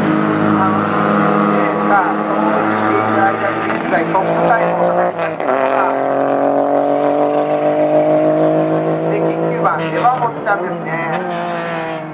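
A racing kei car's small 660 cc engine running hard at speed. About five seconds in, a gear change drops the pitch, and the pitch then climbs steadily for several seconds before it changes again near the ten-second mark.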